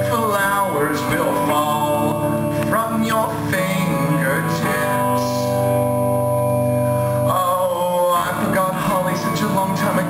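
A song played live on a solo electric guitar, with a man singing over it at times.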